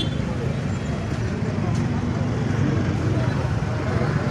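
Indistinct talking from a crowd of people over the steady low rumble of bus and other vehicle engines running in street traffic.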